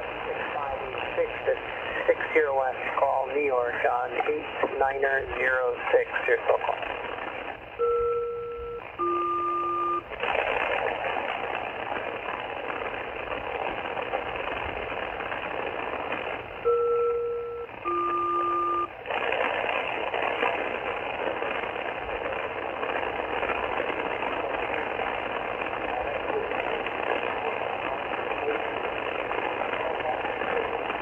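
Shortwave receiver on a single-sideband aeronautical HF channel, giving steady band-noise hiss and, in the first several seconds, a garbled sideband voice. About eight seconds in, a SELCAL call sounds: two two-tone chords of about a second each, one after the other. The same call repeats about nine seconds later.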